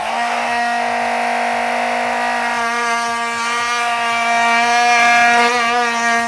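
Oscillating multi-tool running steadily, its blade cutting through 110 mm plastic soil pipe, a steady whine that gets a little louder about four seconds in.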